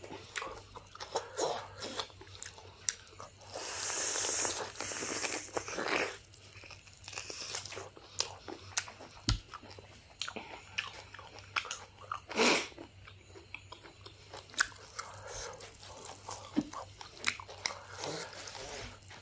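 Close-up eating sounds of boiled beef on the bone: wet chewing, lip smacks and mouth clicks, with fingers pulling meat from a large beef bone. A longer hissing stretch comes about four seconds in, and one louder sharp burst about twelve seconds in.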